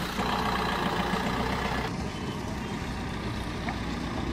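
A Maruti Suzuki Swift hatchback's engine running steadily as the car moves off and drives along the road. The sound shifts about two seconds in.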